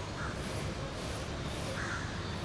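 Two short bird calls, about a quarter second in and near the end, over a steady low background rumble.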